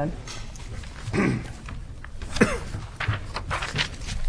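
A throat being cleared, followed by a few short low vocal sounds and rustles.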